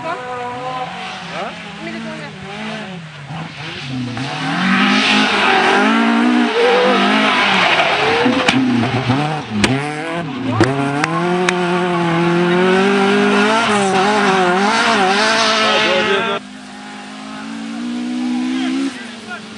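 Drift car engine revving up and down under hard driving, with tyre squeal and a few sharp cracks midway. Near the end the sound drops suddenly to a quieter, steadier engine note.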